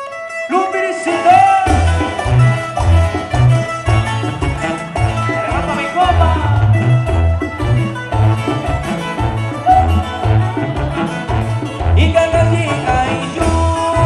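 A live band starting a song: a lead melody and guitars come in just after the start, then a bass line and drums join about two seconds in and keep a steady bouncing rhythm.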